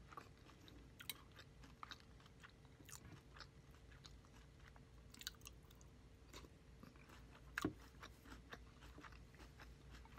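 Close-miked chewing of Fruity Pebbles cereal in milk: soft, scattered crunches, with one louder crunch about three-quarters of the way through. A faint steady hum lies underneath.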